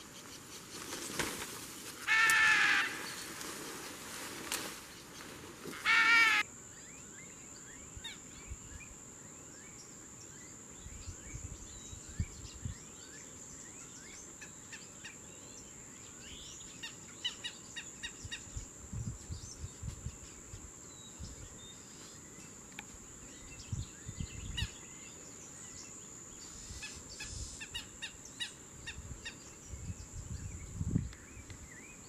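Loud, harsh bird calls in short repeated bursts, about two seconds in and again about six seconds in. After that comes faint outdoor ambience: a steady high whine, scattered faint chirps and a few soft low thumps.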